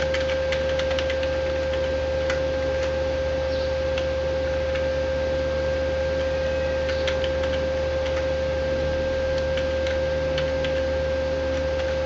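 Scattered light computer-keyboard clicks as code is typed, over a loud steady hum with a constant mid-pitched tone.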